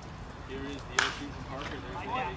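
A single sharp pop about a second in as a pitched baseball smacks into the catcher's leather mitt, with people talking around it.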